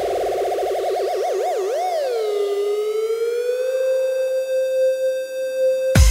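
A synthesizer note in an electronic dance remix, heard alone without drums: it wobbles fast, the wobble slowing into a few wide swoops, then dips in pitch and glides back up to a steady held tone, like a siren. The beat comes back in right at the end.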